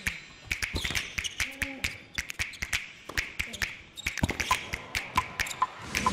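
Tennis rally on an indoor hard court: sharp pops of rackets striking the ball, with the players' quick footsteps and short shoe squeaks between the strokes.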